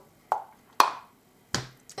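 A small wax candle being put into a mosaic glass candle holder: three short, light knocks, the middle one the loudest.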